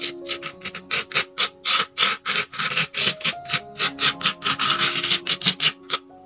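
Red plastic spoon rubbing and scraping loose coloured sand across a sand-painting board in quick repeated strokes, about four a second, over soft background music with plucked guitar-like notes.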